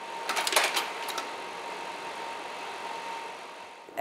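Carousel slide projector running: a quick cluster of mechanical clicks in the first second as its slide-change mechanism works, then the steady whir of its cooling fan with a faint steady hum.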